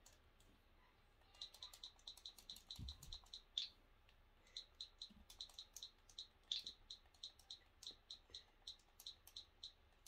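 Faint, quick clicking of TV remote buttons, about three to four clicks a second with short pauses, as a search is typed letter by letter on an on-screen keyboard. The clicks start about one and a half seconds in, and there is one low thump about three seconds in.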